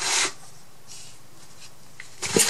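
A single short rasping stroke of a paintbrush across a painted wooden box, about a quarter second long at the very start, followed by a few faint handling ticks.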